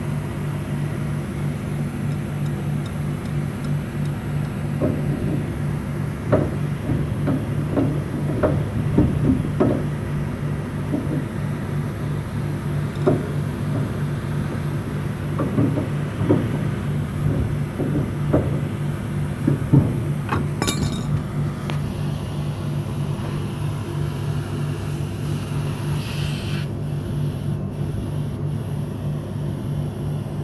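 Air conditioner outdoor unit with a newly fitted three-phase compressor running with a steady mains hum, after the air has been purged from the lines. Scattered light knocks and taps come through in the middle.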